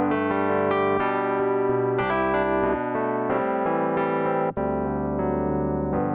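Electric piano preset on an Arturia AstroLab stage keyboard, played as a run of sustained chords that change about once a second, with a brief break about four and a half seconds in.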